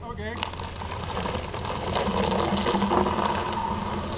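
Truck engine running under load, growing louder over a few seconds, mixed with rough scraping noise.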